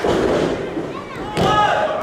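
Referee's hand slapping the wrestling ring mat twice, about a second and a half apart, counting a pinfall that stops at two. Spectators shout and call out between the slaps.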